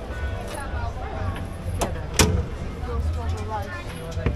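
People talking over a steady low rumble, with two sharp clicks about two seconds in.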